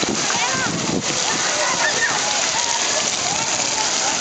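Splash-pad spray fountains hissing and splashing into shallow water, under the shouts and chatter of a crowd of children.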